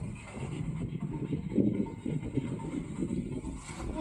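Low, uneven rumble of a small motorboat under way, with wind buffeting the microphone.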